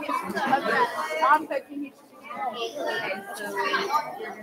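Children's voices chattering, with no clear words, and a brief lull about halfway through.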